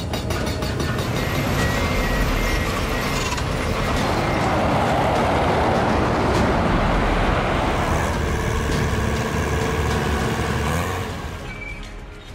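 Heavy machinery and road noise: rapid, even blows of a hydraulic breaker on rock at first, then the steady noise of a heavy low-loader truck passing on the road, fading near the end.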